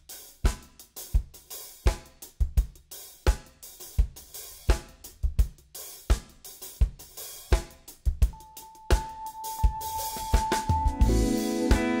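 A jazz drum kit playing a slow, steady groove of kick, snare and hi-hat to open a tune. About eight seconds in a held high note joins, and near the end the bass and chords of the rest of the band come in.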